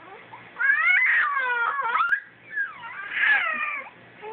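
A four-and-a-half-month-old baby squealing: two long, high-pitched cries that bend up and down in pitch, the first starting about half a second in and the second near three seconds. She is trying out her new voice.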